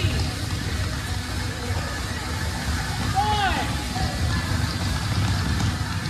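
A steady low rumble fills a large gym, and about three seconds in comes one high vocal whoop that rises and falls.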